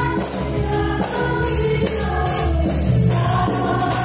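Yamaha stage piano played with both hands: worship-song chords held over a steady beat, with choir-like voices in the mix.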